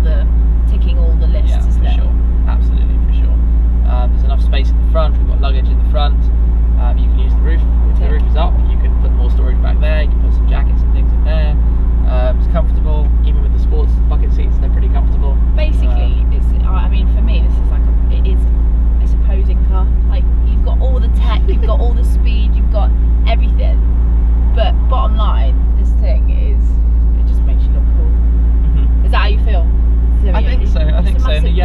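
McLaren 570S Spider's twin-turbocharged V8 running steadily with a low even drone at a crawl in traffic, heard from inside the open-top cabin, with voices talking over it.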